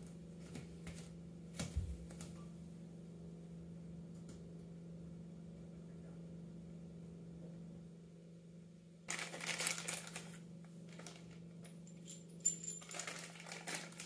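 Faint clicking and rattling of hands handling small fittings at a toilet's water supply connection, in two short bouts in the second half, over a steady low hum.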